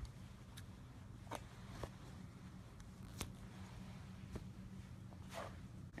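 Scissors snipping thick chenille blanket yarn: a few faint, irregularly spaced clicks of the blades, then a brief soft rustle near the end.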